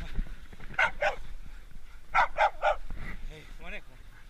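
Hunting hounds giving short, sharp yips: two about a second in, then three quick ones just after two seconds, followed by a whine that rises and falls near the end.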